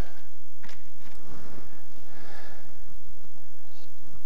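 Faint clicks and handling noise from a metal articulating hollowing arm being moved into position, over a low steady hum: one click a little under a second in and another near the end.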